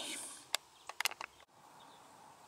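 A few short, sharp clicks and light handling noise from small metal parts and tools, then a faint steady outdoor background after about a second and a half.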